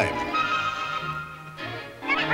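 A cartoon horse whinnying at the start over film-score music, then a held chord that fades away.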